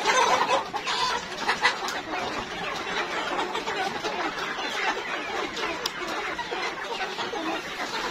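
A large flock of hungry domestic hens clucking and calling all at once in a steady, overlapping clamour as they wait at the feed trough to be fed.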